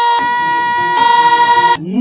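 A steady, bright tone held at one pitch, re-struck about every three-quarters of a second, that cuts off suddenly shortly before the end, where a voice with a wavering pitch comes in.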